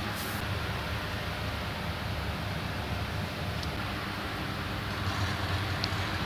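Steady low hum and hiss of a small room's background noise, with no distinct events.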